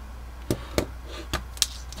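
Four light clicks and taps of small parts being handled as a micro LED's wires are hooked up to a battery lead, over a faint steady low hum.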